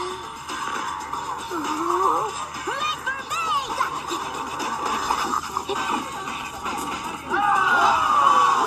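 Animated film soundtrack playing from laptop speakers and picked up by a phone: music with gliding, bending tones and cartoon sound effects, getting louder near the end.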